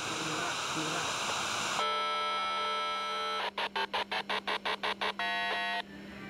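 Hiss of TV static, then electronic beeping. First comes a steady held chord of tones, then a rapid run of about eleven short beeps at roughly seven a second, then one last held tone that cuts off near the end.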